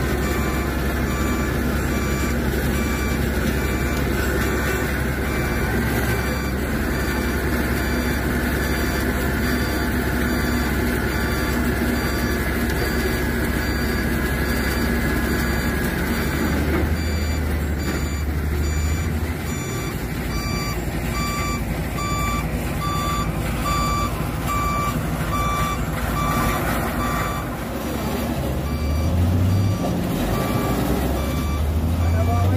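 A heavy vehicle's reversing alarm beeping steadily, about once a second, over a large engine running; the engine note swells briefly partway through and again near the end.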